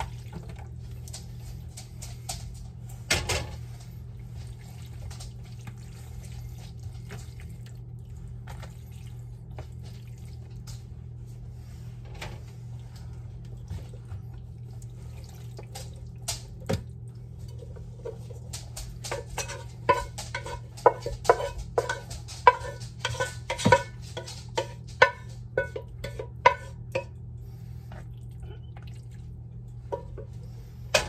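A wooden spoon scraping and knocking against a pot as a thick pasta-and-meat-sauce mixture is emptied into a foil baking pan. There are scattered soft clicks at first, then a quick run of knocks and scrapes with a short ring between about two thirds and nine tenths of the way in. A low steady hum sits underneath.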